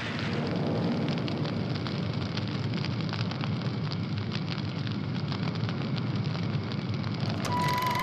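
Fire crackling and rumbling steadily, a burning sound effect laid over wartime bombing footage.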